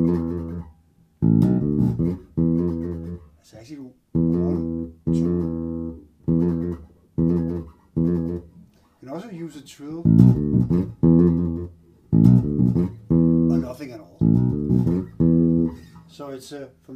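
1978 Music Man StingRay electric bass played fingerstyle through an amp, picking out an E minor funk bass line in short phrases with brief gaps between them. Sliding notes come in near the middle.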